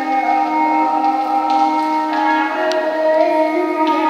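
Live ensemble music, a slow lullaby-style piece of long held melodic notes that step to a new pitch every second or so over a sustained accompaniment.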